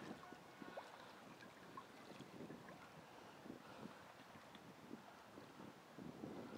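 Faint lapping of choppy river water against shoreline rocks, with small irregular splashes.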